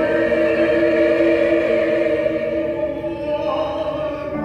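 A choir singing held chords in several parts, moving to a new chord near the end.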